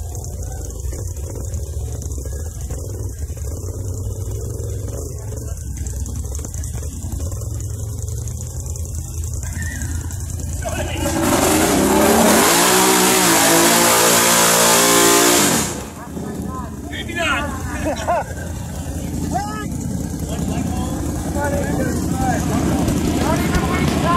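ATV engine running low and steady in thick mud, then revving hard for about four seconds, with a loud rush of noise over the engine. It drops back suddenly to a low running sound.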